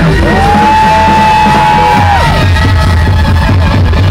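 Live pop-rock band playing loud over a heavy bass pulse. A single long high note is held for about two seconds near the start, sliding up into it and dropping off at the end.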